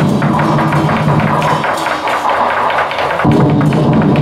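A Chinese drum-and-cymbal ensemble plays a fast, steady beat to accompany a dragon dance. The deep drum drops out for about a second and a half in the middle and comes back in abruptly, while the quick high strokes keep going.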